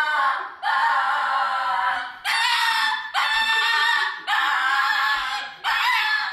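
A small dog howling: a run of about five long calls, each lasting around a second, with brief breaks between them.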